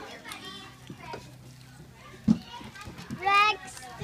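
Young children playing, their voices in the background, with a single sharp thump a little past halfway and a child's high-pitched voice rising and falling near the end.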